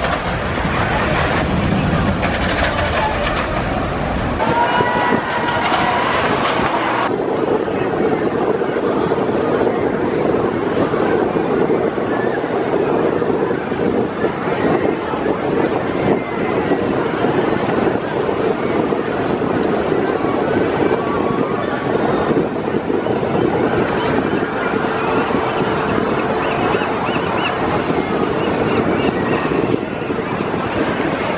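Giant Dipper wooden roller coaster train running along its wooden track: a steady, loud rush of wheels on rails, with people's voices mixed in. The sound changes abruptly twice in the first seven seconds.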